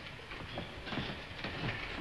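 Faint irregular clicks and knocks over a low rumble from a TV drama's soundtrack during a dark tunnel scene.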